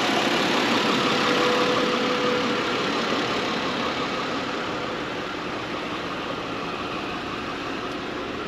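The 3.2-litre V6 of a 2001 Mercedes-Benz CLK320 idling, heard through the open hood as a steady, even running noise that grows gradually quieter.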